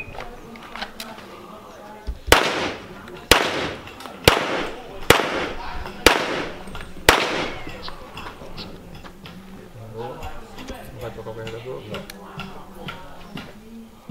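Six pistol shots from a semi-automatic handgun, about one a second, starting a little over two seconds in, each followed by a short echo. It is a timed six-shot string drawn from the holster.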